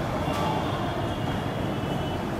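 Steady background noise with a low rumble and no speech, plus a faint thin high tone from about a third of a second in.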